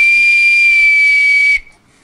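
Small brass whistle blown in one long steady blast, a single high tone with a breathy hiss, cutting off about one and a half seconds in. It signals time's up at the end of a countdown.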